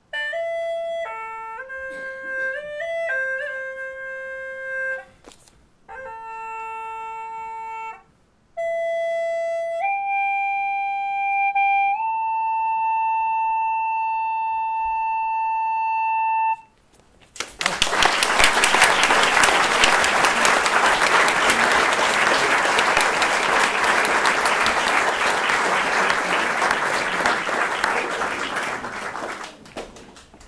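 A small flute plays a slow solo melody in short phrases of clear, pure notes, stepping up to a long held note about halfway through. An audience then applauds for about twelve seconds.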